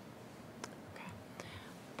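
Quiet room tone with a faint, softly spoken "okay" and a couple of small clicks.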